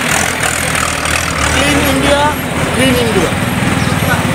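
Roadside traffic: a vehicle engine running close by, its low rumble turning into a rapid low throb in the second half, with a voice speaking over it.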